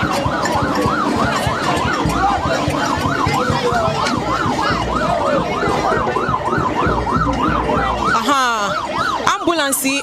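Ambulance siren sounding a yelp, its pitch sweeping up and down about three times a second, then switching to a much faster warble near the end.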